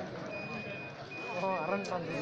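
Spectator crowd noise at an outdoor kabaddi match, with voices rising and falling about a second and a half in. A steady high-pitched tone sounds twice over it, each about half a second long.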